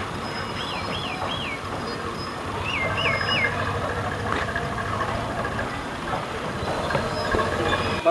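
Steady outdoor background rumble, with two runs of three quick high chirps in the first half.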